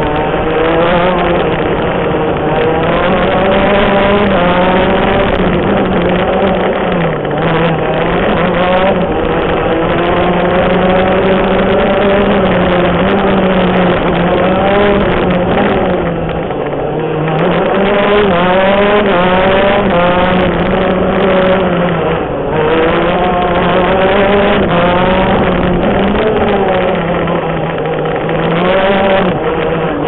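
125cc shifter kart's two-stroke single-cylinder engine at racing speed, heard from on board. Its pitch climbs and then drops in steps again and again as it is driven up and down through the gears.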